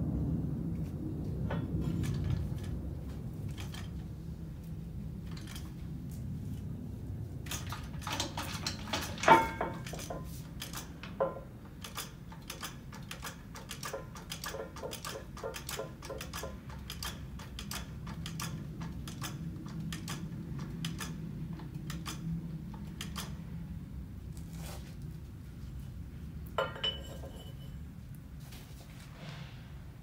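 Hydraulic floor jack being worked under a truck axle: a run of light metallic clicks and clinks, with a sharper metal clank about nine seconds in and another pair near the end, over a steady low shop hum.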